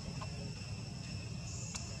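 Insects calling in a steady, unbroken high-pitched drone over a low rumble, with a single faint click near the end.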